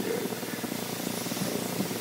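Steady background hum and hiss of room noise in a short pause between a man's spoken sentences, with no distinct event.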